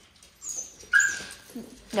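A dog giving short high whimpering cries during rough play with other dogs, the clearest a steady whine about a second in lasting about half a second.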